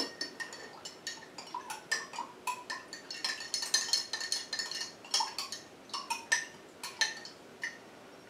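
A spoon stirring liquid in a glass mason jar, clinking repeatedly against the glass with short ringing taps. The clinks stop shortly before the end.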